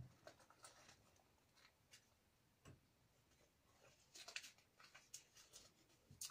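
Near silence with faint scattered taps and short paper rustles, a small cluster about four seconds in: seed packets being handled and sorted.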